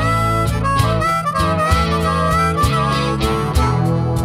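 Diatonic blues harmonica playing a solo line into a stage microphone, its notes bending and sliding in pitch, over live band accompaniment with bass and regular drum hits.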